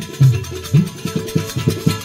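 Instrumental passage of a Gujarati desi bhajan: a dholak beats a quick rhythm of low strokes under held harmonium chords, with small hand cymbals (manjira) clashing in time. No voice sings here.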